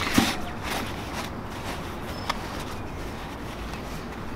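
Nylon parachute fabric rustling as the S-folded main canopy is pressed down to keep the air out and the deployment bag is pulled over it, with a couple of light clicks.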